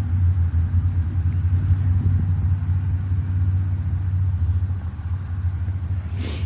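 A steady low rumbling hum, constant in level, with no separate events.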